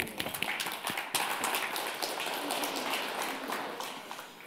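Audience applause: a dense patter of hand claps that thins out and fades near the end.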